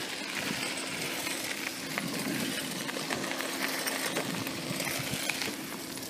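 Bicycle tyres rolling over a dirt and gravel road: a steady rough noise full of small clicks and rattles.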